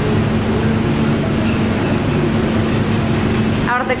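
A loud, steady low rumble with a constant hum under it, cut off abruptly near the end by a voice.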